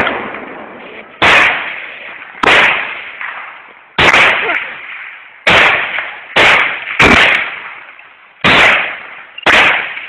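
Gunfire: eight single shots at irregular intervals, each a sharp crack followed by an echo that dies away over about a second.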